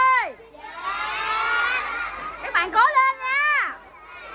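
A group of young children shouting a cheer together, followed near the end by one high-pitched voice calling out with rising and falling pitch.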